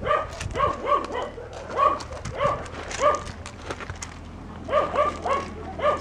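A dog giving short, high-pitched yips, about ten in all, in quick groups of two or three.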